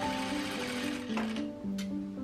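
Soft piano music. Under it a sewing machine runs a stitching burst for about a second and a half, then gives a brief second burst near the end.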